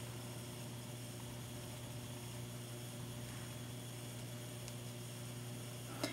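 Faint steady low hum with an even hiss underneath: room tone or a recording's electrical hum, unchanging throughout.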